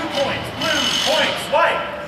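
Indistinct men's voices talking in a large, echoing indoor hall.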